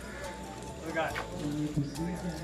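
A man's voice chanting or speaking, with light knocking clicks, one about a second in.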